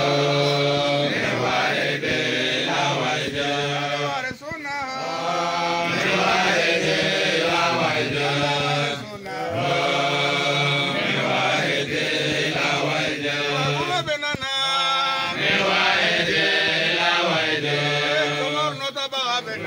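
Islamic religious chant by male voices, led by a man chanting into a handheld microphone, sung in long held phrases with a short break about every five seconds.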